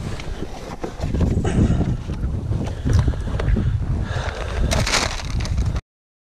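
Wind buffeting the microphone, with rustling and knocks from gear being handled in dry grass; the sound cuts off abruptly near the end.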